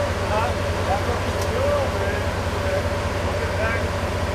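Rock-crawling buggy's engine running at a low, steady pace under load as it crawls up a vertical rock ledge, with indistinct voices of onlookers over it.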